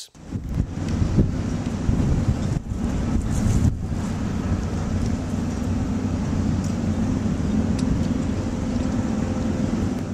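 Steady low rumble of outdoor construction-site noise on a rooftop, with a few faint clicks in the first couple of seconds.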